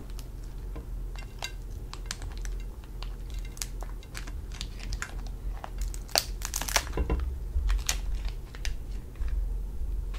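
Hands breaking and pulling apart the shell of a cooked lobster claw: a run of small crackles and clicks of shell, thickest a little past the middle, over a steady low hum.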